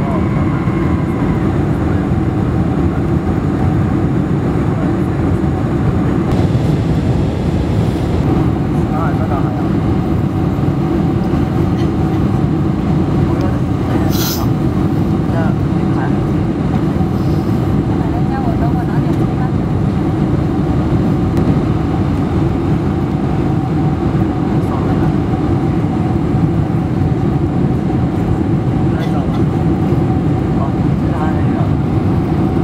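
Steady cabin noise inside a Boeing 747 on final approach: a dense, even rumble of airflow and engines with a steady mid-pitched tone through it. A single sharp click sounds about 14 seconds in.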